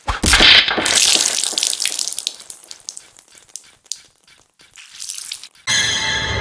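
Logo-animation sound effect: a sudden hissing, crackling burst that fades away over about two and a half seconds, with a shorter burst about five seconds in. Music starts just before the end.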